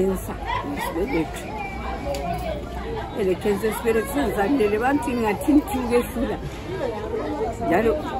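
Speech only: a woman talking without pause, in words the recogniser did not transcribe.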